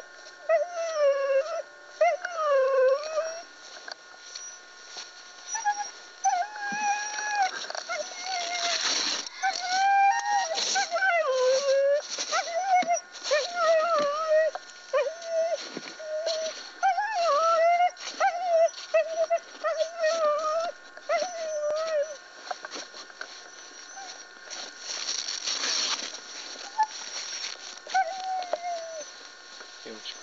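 A team of harnessed husky-type sled dogs whining and howling in wavering, overlapping calls while the team stands stopped, the sound of dogs eager to run again.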